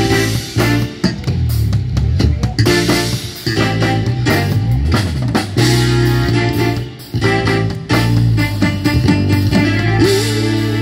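Live band playing, with drum kit and guitar to the fore over keyboard and bass notes.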